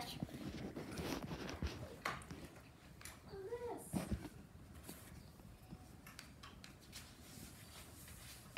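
A plastic brush stroked through a plush toy's shaggy synthetic fur: faint scratchy rustling with a few light knocks from handling the toy and brush.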